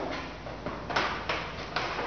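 Plastic-on-metal clicks and knocks as a Yepp Maxi child seat on its Easy Fit adapter is pushed into the rails of an e-cargo bike's rear rack: a quick run of about five sharp knocks.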